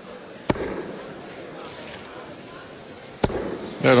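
Two steel-tip darts thudding into a bristle dartboard, about two and a half seconds apart, over a low hall murmur.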